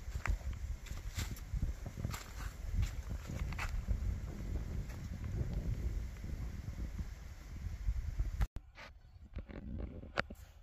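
Wind buffeting the microphone in a low, uneven rumble, with a few faint clicks. It breaks off abruptly about eight and a half seconds in, giving way to a much quieter background with scattered small clicks.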